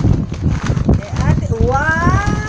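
Rubbing and knocking of hands and fabric against a handheld phone's microphone. Near the end a high-pitched voice begins a long call that rises in pitch.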